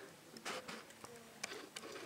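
Faint rustling and light scattered ticks of hands playing with a kitten lying on its back in a lap, rubbing its fur while it paws at them.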